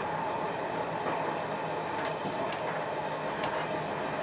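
Passenger train running, heard from inside a sleeper compartment: a steady rumble of wheels on track with a faint constant hum and a few light clicks.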